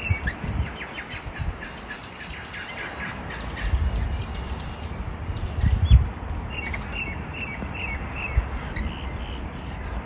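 Rainbow lorikeets giving short, high chirps in two spells, near the start and again about two-thirds of the way through, with a thin steady whistle in between. Low rumbling thumps, loudest around six seconds in, run underneath.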